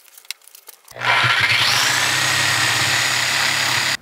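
Corded handheld power tool cutting an aluminum plate: its motor starts about a second in with a rising whine, then runs steadily under load.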